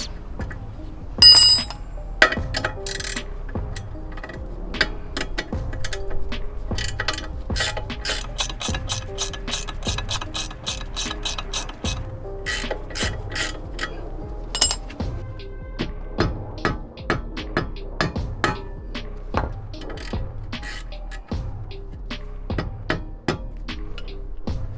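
A 16 mm ratcheting box-end wrench clicking in quick runs as it is swung back and forth to loosen an upper control arm bolt, with background music underneath.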